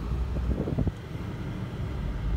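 Car engine running, heard from inside the cabin as a steady low rumble.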